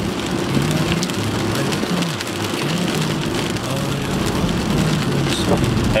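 Steady rain and road noise inside a moving car's cabin. A low hummed melody runs over it in short held notes.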